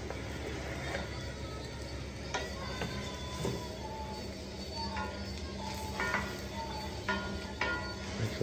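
Chorizo, bacon and egg frying in a large frying pan, stirred with a wooden spoon that knocks and scrapes against the pan several times, over a steady sizzle. Faint music plays underneath.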